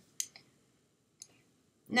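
A sharp click just after the start and a fainter click about a second in, in a quiet pause; a woman's voice starts again near the end.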